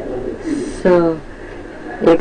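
A man's voice through a microphone: a short hissed consonant, then one brief spoken syllable about a second in, amid low room murmur.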